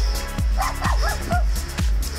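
Dance music with a steady kick drum at about two beats a second, with short dog-like yelps or barks mixed in about halfway through.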